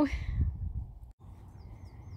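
Low wind rumble on the microphone that fades out. After a sudden cut, faint small-bird chirps come near the end: a quick row of short, high, falling notes.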